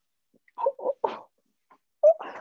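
A woman's stifled laughter behind her hand: a few short, muffled bursts in quick succession about half a second in.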